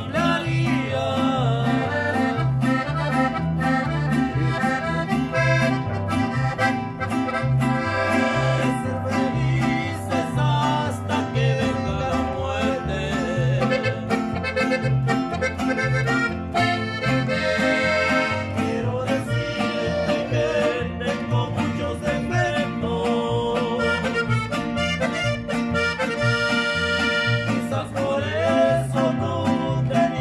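Mariachi group playing an instrumental passage: an accordion carries the melody over strummed guitars and a steady, alternating bass line on a guitarrón.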